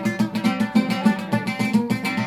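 Oud played solo in a quick run of plucked notes, the strings ringing with a low, resonant body.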